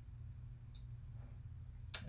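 Quiet room tone of a voice-over recording: a steady low electrical hum, with a faint click about a third of the way in and another just before the end.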